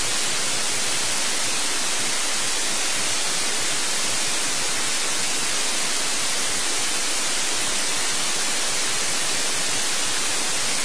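Steady, loud white-noise hiss, unchanging throughout, of the kind played in a courtroom to mask a bench conference from the jury and the public.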